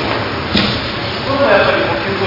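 A single sharp thud about half a second in, from the thrown aikido partner on the mat, followed by a man's voice speaking.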